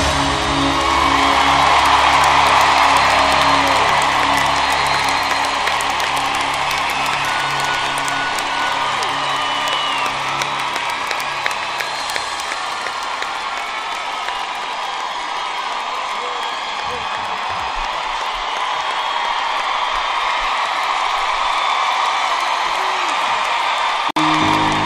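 Large arena crowd cheering, whooping and applauding at the end of a rock song, while the band's last held chord fades out over the first several seconds.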